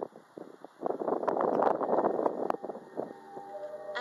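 About two seconds of rustling, crackly noise with a few sharp clicks. Soft, sustained background music comes in near the end.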